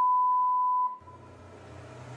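A single steady electronic beep, one pure high tone held about a second, cutting off just before a second in. A low hum follows and slowly grows louder.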